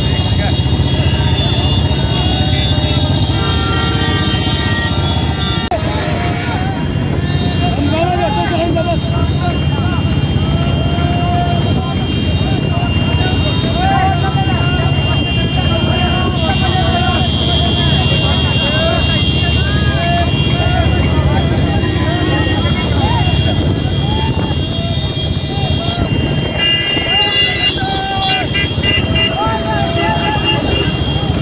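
Steady engine rumble with wind noise, men shouting over it, and horns tooting around four seconds in and again near the end.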